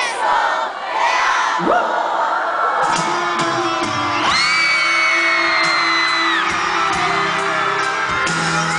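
A live pop band plays an instrumental passage of a ballad with sustained chords, while the audience near the microphone cheers and whoops. A rising glide comes about two seconds in, and a long high note is held for about two seconds midway.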